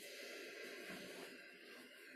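A faint, long out-breath slowly fading away, a person exhaling as they turn into a seated yoga twist.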